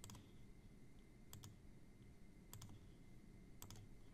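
Faint computer mouse clicks over near-silent room tone: three pairs of quick clicks about a second apart, made while selecting geometry to build a loft in CAD software.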